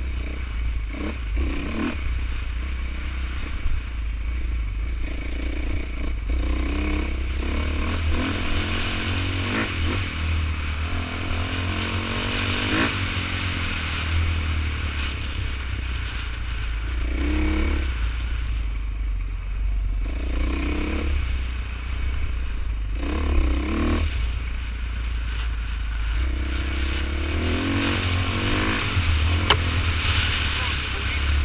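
Enduro dirt bike engine running under way on a trail, its pitch rising and falling again and again as the throttle is worked, with clatter from the bike over the rough ground.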